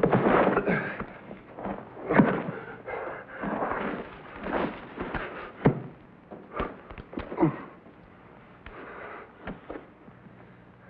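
Fight-scene sound on a vintage TV soundtrack: a run of sharp knocks and scuffles with short cries, thinning out in the last couple of seconds.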